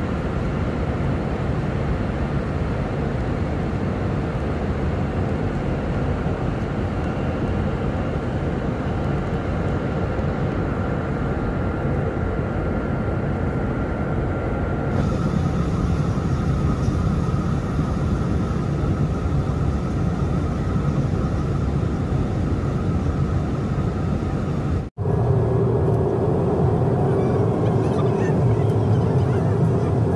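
Jet airliner cabin noise at a window seat in flight: a steady roar of engines and rushing air. About halfway through the hiss grows brighter. After a brief cut near the end, a lower, humming drone with a steady tone takes over.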